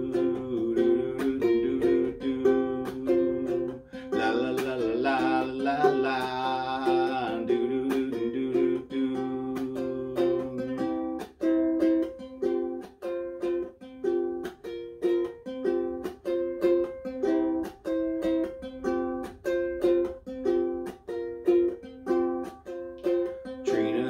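Ukulele strummed in a steady rhythm, moving through a repeating chord pattern.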